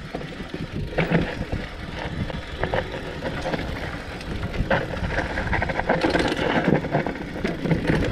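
Mountain bike riding down a dirt forest trail: a steady noisy rumble of tyres rolling over dirt and roots, with the bike rattling. Sharper knocks come over bumps, one about a second in and another just before five seconds.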